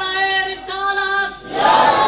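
A man singing in the chanted style of a majlis recitation: two long held notes, a short break, then a louder phrase beginning near the end.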